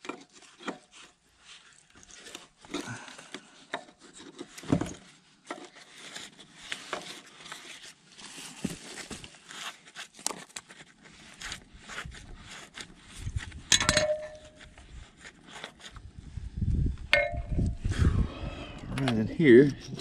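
Hand tools clinking and scraping on the steel track-tensioner fitting of a John Deere 450J dozer as it is loosened to let the track tension off. Scattered light clicks throughout, with a sharp ringing metal clink about 14 seconds in and another about 17 seconds in.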